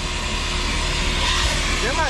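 Self-service car-wash vacuum running: a steady rushing hiss of air sucked through its hose, pulling hard.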